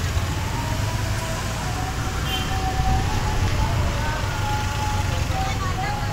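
Traffic noise in a slow-moving jam, heard from a motorcycle: a steady low rumble of engines, with faint voices in the background.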